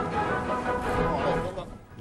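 Background music with steady sustained tones, dropping away near the end.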